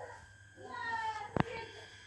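A single drawn-out, high-pitched vocal call lasting well under a second and falling slightly in pitch, followed by a sharp click.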